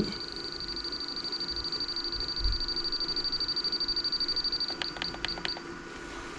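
RC transmitter beeping as the channel 3 gyro-gain value is stepped up from zero to positive: a steady high-pitched electronic tone pulsing rapidly for about four and a half seconds, then four short beeps, over a faint steady hum.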